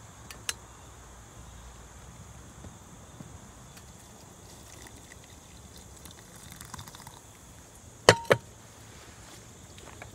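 Dark chloroauric acid solution trickling faintly from a glass laboratory beaker into a filter funnel. Near the end come two sharp knocks in quick succession as the glass beaker is set back down on the hotplate stirrer, and the first knock has a brief glassy ring.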